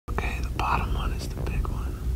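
A person whispering a few words, with a steady low rumble underneath.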